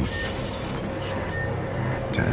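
Film-trailer soundtrack: a steady low rumbling drone under a dense wash of noise, with short high beeps a little over a second apart.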